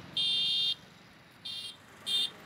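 High-pitched electronic beeps: one loud beep lasting about half a second, then a shorter beep about a second later.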